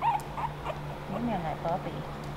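Three-week-old Boston terrier puppies squeaking: a string of short, high squeaks and little whimpers, several in two seconds, over a steady low hum.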